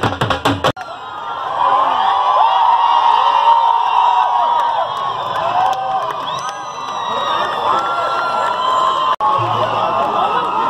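Dhol drums beaten with sticks in quick strokes, cut off abruptly less than a second in. Then a large crowd of marchers shouting and cheering, many voices overlapping.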